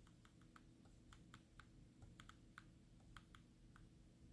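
Faint, irregular clicking, about three or four clicks a second, from the computer controls used to step through CT image slices.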